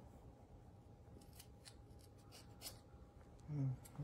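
Scissors snipping through a lock of hair: a run of quiet, crisp snips through the middle, then a short hum from a person's voice near the end.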